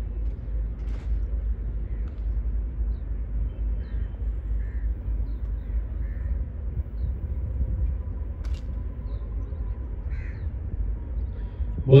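Open-air ambience with a steady low rumble and a few faint crow caws.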